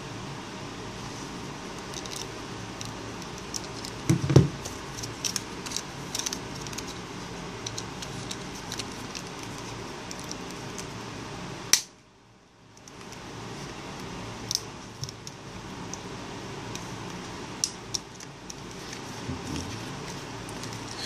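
Scattered small plastic clicks and taps as the LG Optimus 7's housing is pressed and snapped together, over a steady background hiss. A louder thump comes about four seconds in, and a sharp click near the middle, after which the sound drops out for about a second.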